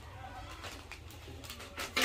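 A bird cooing faintly, in the manner of a dove, over a low steady hum, with a few light clicks of chopsticks against a metal tray as noodles are tossed.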